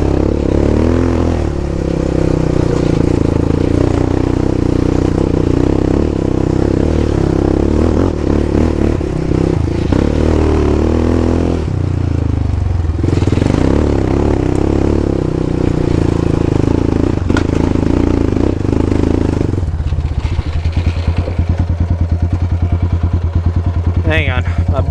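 Yamaha Raptor 700's single-cylinder four-stroke engine running under throttle, with the quad rattling over rocks. The engine eases off briefly about halfway through. In the last few seconds it drops to a slow idle with distinct, even firing pulses.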